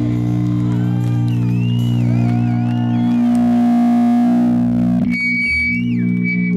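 Distorted electric guitar holding a droning chord through the amplifiers, with wavering, gliding high notes over it. About five seconds in the drone drops back and a thin, steady high tone rings out.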